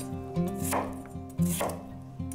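Chef's knife chopping a peeled raw potato into chunks on a bamboo cutting board: four sharp strokes in two seconds, the blade hitting the wood.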